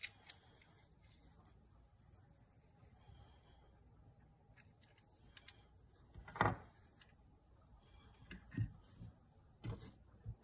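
Scattered faint clicks and taps of a smartphone bow-mount bracket being handled and fitted onto a compound bow.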